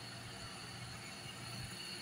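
Faint steady room tone with a low hum and a light hiss.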